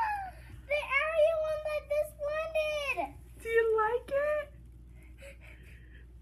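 A young girl's high-pitched wordless vocalizing: a drawn-out sound of about two seconds with the pitch gliding up and down, then a shorter one.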